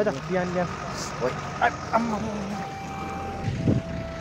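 Street traffic with indistinct voices. In the second half a vehicle horn sounds as a steady tone, dropping to a lower pitch once and holding.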